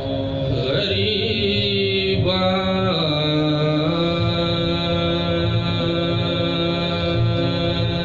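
A man's solo voice chanting soz khwani, the melodic Urdu lament for the martyrs of Karbala, in long held notes. The melody steps down in pitch about two to three seconds in, then settles on one long sustained note.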